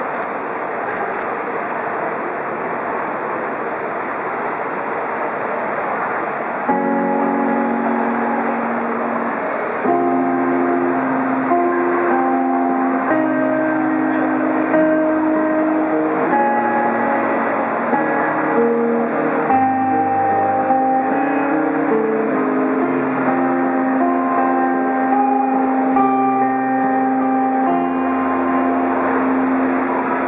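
Amplified cutaway acoustic guitar playing the instrumental introduction of a slow song, plucked chords and held notes, coming in about seven seconds in over steady background noise and growing louder from about ten seconds.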